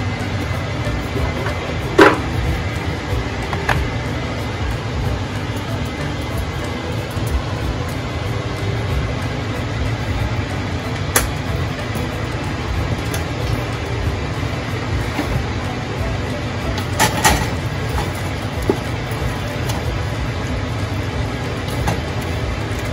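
A steady low rumble in the kitchen, with a few sharp clinks of a utensil against the aluminium cooking pot, the loudest about two seconds in and another pair near the end.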